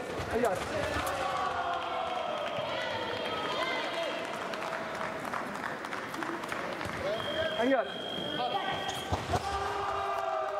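Indistinct voices echoing in a large sports hall, with scattered thuds and taps of fencers' footsteps on the piste. A steady high tone sounds for nearly two seconds near the end.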